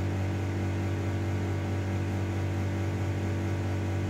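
Steady low electrical hum of a running appliance motor, unchanging, with a faint hiss over it.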